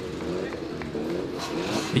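Modified street cars driving slowly past on a wet road, their engines running at low speed, with voices in the background.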